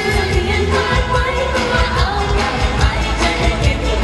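A woman singing a pop song live into a handheld microphone over amplified accompaniment with a steady drum beat.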